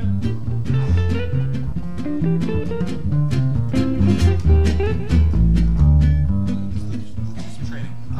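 A jazz trio of two electric guitars and an upright bass playing swing: the bass walks a line of steady, evenly stepping low notes while the guitars pick single notes and chords over it.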